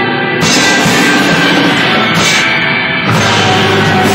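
A rock band playing loud live, with drums and electric guitar.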